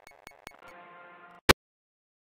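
The tail end of an electronic industrial metal instrumental track: a few sharp ticks, then a faint sustained synth tone that breaks off into a single loud click about one and a half seconds in.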